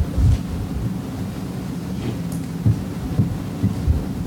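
Steady low room hum with about four short, dull low thumps: one near the start and three in the last second and a half.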